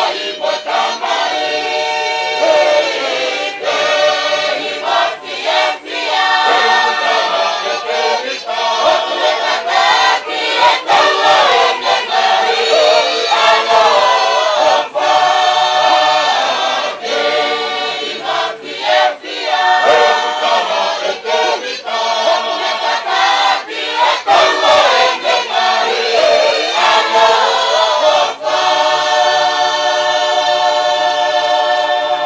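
A choir singing in harmony, many voices holding long notes in phrases with short breaks between them.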